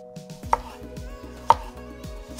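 Chef's knife thinly slicing a shallot on a wooden cutting board: two sharp knocks of the blade on the board about a second apart, with lighter taps between.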